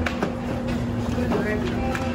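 Busy room background: a low murmur of voices under one steady low hum, with a few small clicks and rustles from a paper gift bag being handled.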